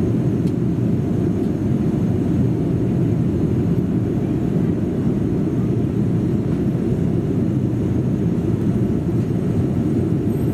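Steady low roar inside the cabin of a Boeing 787-8 airliner in flight, heard from a rear window seat: engine and airflow noise, even throughout.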